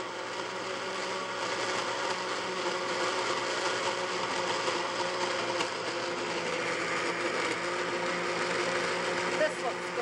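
Countertop blender running steadily on its blend setting, its motor whirring as it purees frozen strawberries, cottage cheese and milk into a thick shake.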